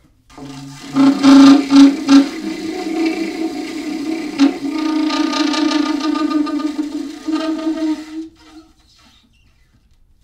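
Solo alto saxophone in free improvisation: a few short, loud low blasts about a second in, then one long held note that stops about eight seconds in.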